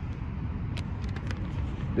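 Steady low background rumble, with a few faint crinkles of receipt paper being handled about a second in.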